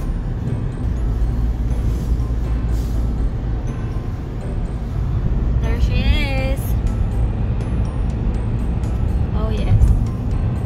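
Steady low road and engine rumble heard inside the cabin of a car moving along a highway. A brief wavering voice sounds about six seconds in.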